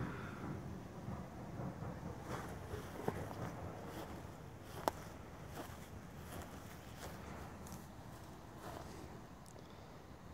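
Faint outdoor background with soft, irregular footsteps on dry grass, and two sharper clicks about three and five seconds in.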